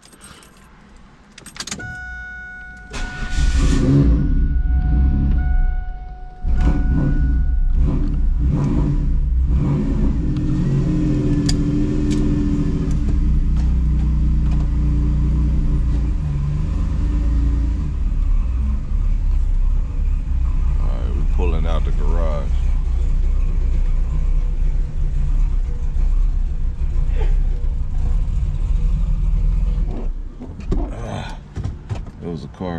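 A car's warning chime sounds steadily, and about three seconds in the Chevrolet Camaro's engine is started. It then runs with a loud, deep, steady rumble, briefly dipping about six seconds in.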